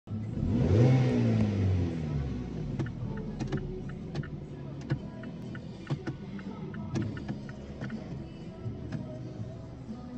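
Mazda 3 (BK) 1.6-litre petrol four-cylinder (Z6) engine heard from inside the cabin: the revs flare up and fall back about a second in, then it settles into a steady idle. Sharp light clicks recur through the idle.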